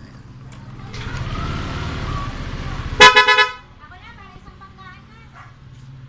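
Yamaha Aerox scooter being started: a rising whirr and rumble for about two seconds, then one short horn toot about three seconds in. The engine is being re-enabled after the GPS tracker's remote shutdown relay was released by text command.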